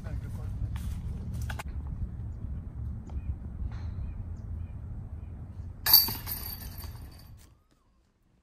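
Steady wind rumble on the microphone. About six seconds in comes one loud, sharp metallic crash with a brief jingle: a putted disc striking the chains of a disc golf basket.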